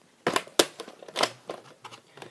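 A plastic VHS tape case being handled and opened: three sharp clicks amid light rustling.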